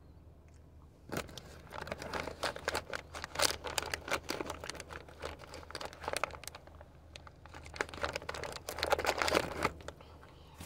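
Crinkling of plastic packaging as it is handled, starting about a second in, with a short lull near the middle before it picks up again.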